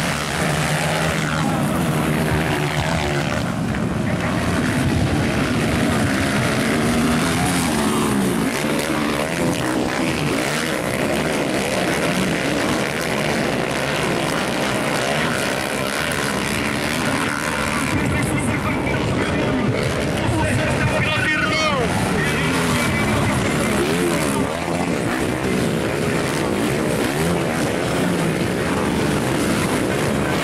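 A pack of motocross dirt bikes racing, many engines revving up and down at once in overlapping, wavering pitches.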